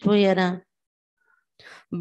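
A woman's voice speaking into a microphone, stopping about half a second in. About a second of silence follows, then a faint breathy hiss just before she speaks again.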